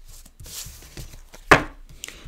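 Tarot cards being gathered up and handled on a table: a run of light clicks and taps, with one sharper knock about one and a half seconds in.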